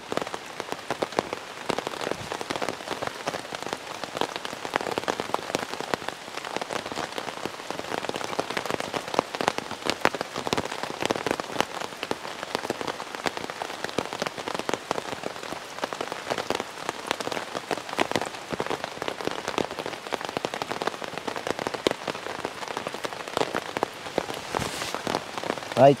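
Steady rain falling on a ripstop polyester tent, heard from inside: a dense, even stream of individual drop hits on the fabric.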